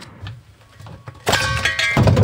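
A spanner and gas fittings clanking against a steel gas bottle while the regulator is fitted: faint handling clicks, then a sudden loud metallic clang with a ringing tail about a second and a bit in.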